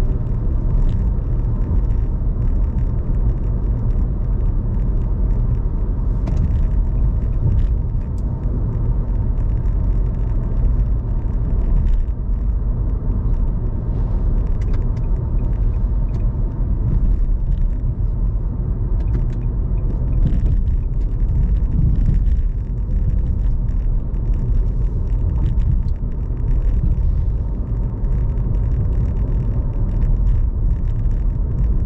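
Steady road noise inside a moving car's cabin: a low rumble of engine and tyres on the road while driving at city speed.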